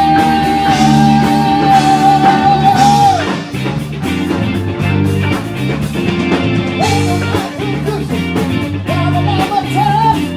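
Live rock band with electric guitars and bass playing at full volume. The singer holds one long high note for about three seconds, then the band plays on, and the singing comes back near the end.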